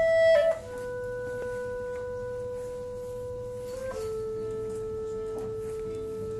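Clarinet holding long, steady, almost pure-toned notes in a free improvisation with electric guitar: a louder high note breaks off in the first half second into a lower held note, which steps down a little about four seconds in. A few faint taps sound behind it.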